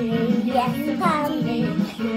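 A children's song playing, with a child's voice singing the melody over the backing music.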